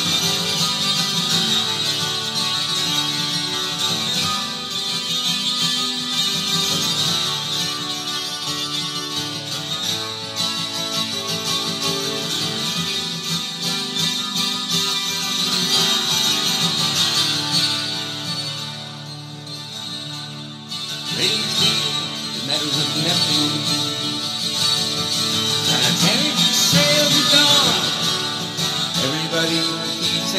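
Acoustic guitar playing an instrumental break in a folk song, with a brief dip in level about two-thirds of the way through.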